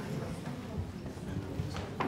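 Irregular footsteps and the knocks of chairs being moved and set down on a stage floor, with a murmur of voices in the hall.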